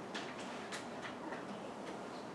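A few faint, irregularly spaced light clicks against quiet room tone.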